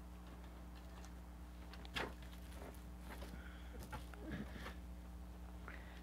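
Steady low electrical buzz from mains interference in the recording's audio chain, a buzz that rerouting the mic cable has not cured. A faint click about two seconds in and soft handling rustles near the middle sit on top of it.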